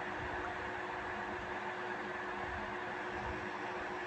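Steady room noise: an even hiss with a faint steady hum under it, unchanging throughout.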